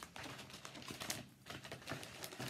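Light clicks and taps of small hard items being handled and put away, several in quick succession in the first second and a few more after.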